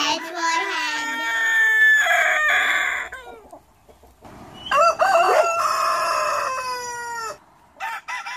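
Rooster crowing twice, each cock-a-doodle-doo lasting about two and a half seconds, with a gap of over a second between them.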